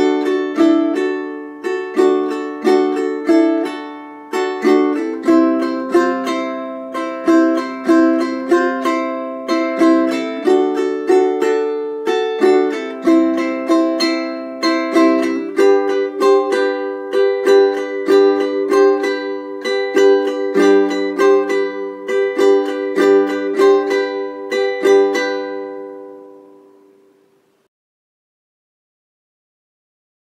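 A solo ukulele strummed in a steady island strum pattern through D, C and G chords with sus2 and sus4 embellishments. The last chord rings out and fades near the end.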